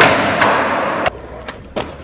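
Skateboard hitting a ledge and grinding along it for about a second, a loud rasping scrape that cuts off suddenly. A few sharp wooden clacks of skateboards follow.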